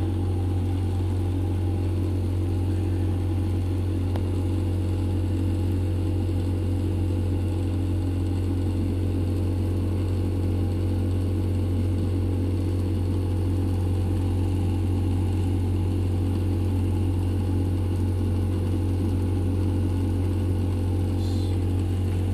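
A steady, unchanging low mechanical hum, like an electric motor running, with no starts or stops.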